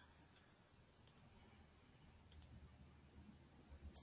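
Near silence: room tone with a few faint clicks, one about a second in, a quick pair a little after two seconds and another near the end.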